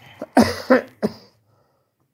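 A man coughing, two short loud coughs about half a second in, followed by a smaller one.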